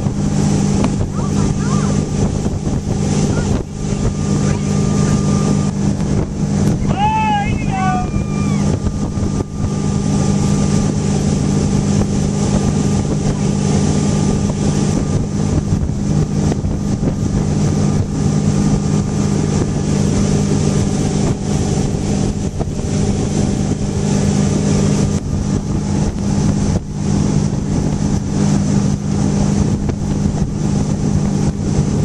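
Tow boat's engine droning steadily at speed while pulling a water skier, with the rush of water and wind past the boat.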